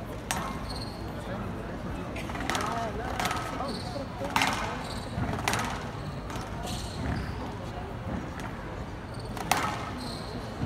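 A squash rally: the ball smacks sharply off rackets and the court walls every second or two, with short high squeaks from the players' shoes on the court floor.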